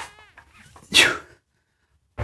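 A man's sharp intake of breath, then a loud, forceful exhale about a second in, as he strains to rock back onto the floor with a pair of heavy dumbbells held to his chest.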